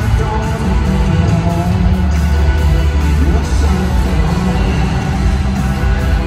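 Live rock band playing through a stadium PA, with heavy bass and electric guitar, heard from far up in the stands.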